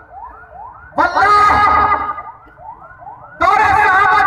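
A siren-like tone rising and falling about three times a second, faint under two loud bursts of a voice, one about a second in and one near the end.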